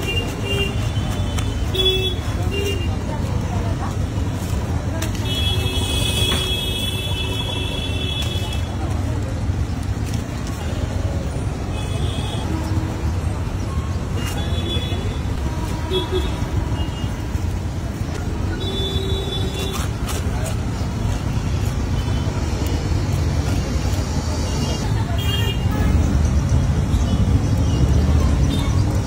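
Steady city street traffic rumble with vehicle horns honking now and then, one held for about three seconds a few seconds in and several shorter toots later.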